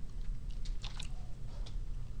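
A few scattered clicks from a computer keyboard and mouse, over a steady low hum.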